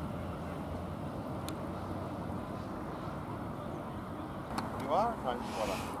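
Steady rumble of an electric suburban train running along the track. A person laughs briefly near the end.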